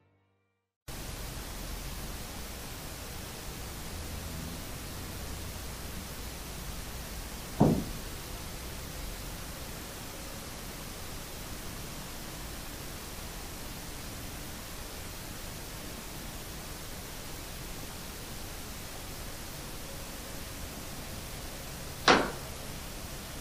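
Steady hiss from an unattended camera's microphone recording an empty room, starting about a second in. About seven and a half seconds in, a single short, dull knock stands out as the loudest sound.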